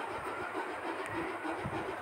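Steady background noise with no speech: a low, uneven rumble under a faint hiss, like room tone in a home recording.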